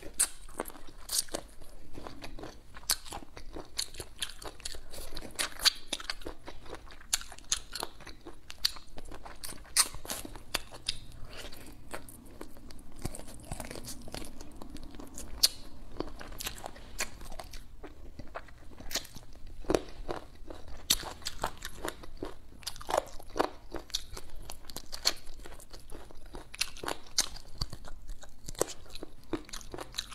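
Close-up eating sounds of pickled chicken feet being bitten and chewed: a steady run of irregular, sharp crunches of skin and cartilage.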